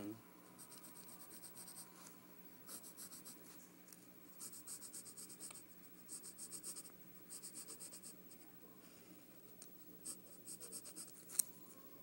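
Pencil scratching on lined paper as maze lines are drawn: short runs of quick back-and-forth strokes, each run lasting about a second, with pauses between them. Near the end there is a single sharp click.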